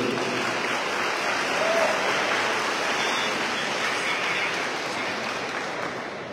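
Audience applauding in a large, echoing auditorium, steady and easing off slightly toward the end.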